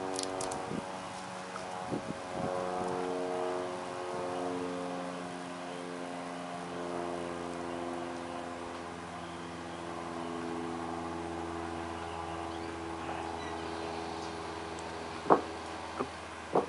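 An engine running steadily, its pitch drifting slowly over several seconds, with a short sharp sound near the end.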